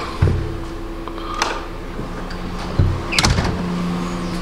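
A steady mechanical hum, like a fan or air handler, with two dull knocks and a couple of sharp clicks as a handheld camera is moved about.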